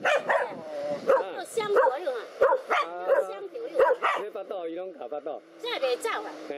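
Dogs barking repeatedly, about two short barks a second, in a standoff with a cobra.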